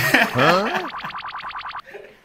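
A comic boing sound effect: a springy, wobbling twang of quick even pulses with pitch swooping up and down, cutting off just before the end.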